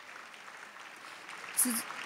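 Audience applause in a large hall, a soft patter of many hands thinning out. A brief voice sound comes near the end.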